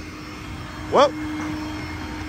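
A vehicle engine idles with a steady, even hum and a low rumble underneath.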